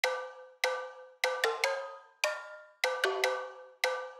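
Unaccompanied intro of a hip hop beat: a melody of bell-like struck notes, each ringing and fading, at a few different pitches. There are ten notes, most of them about six-tenths of a second apart, with quick extra notes slipped in twice.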